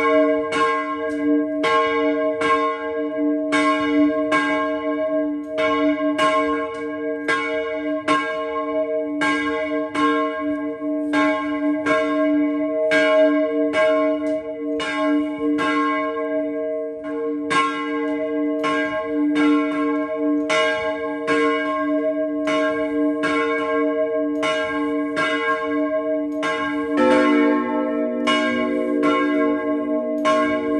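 Church bells rung by hand, heard close up in the tower: one bell struck in rapid, steady strokes, its tones ringing on between strokes. About three seconds before the end a second, lower-pitched bell joins in.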